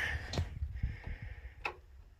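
Two short clicks about a second apart from a wall light switch being flipped, with dull handling bumps.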